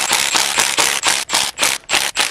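A Milwaukee cordless power tool on a socket, running in short bursts at about four a second as it backs out the bolts holding down the VTEC rocker-shaft assembly on a Honda L15 cylinder head.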